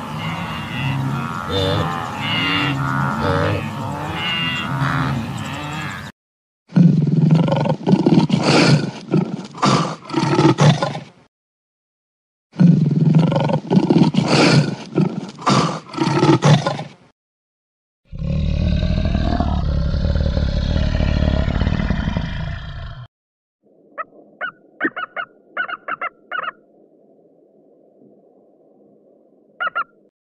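Wildebeest herd calling, many animals overlapping, for about six seconds; then a lion roaring in two long bouts of several seconds each. After that comes another deep, noisy call lasting about five seconds, and in the last few seconds a run of faint sharp clicks over a low hum.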